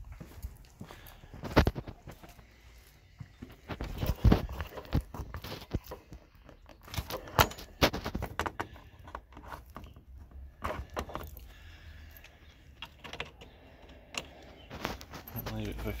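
Scattered clicks, knocks and rattles from a jump starter's booster lead and battery clamps being handled, with footsteps.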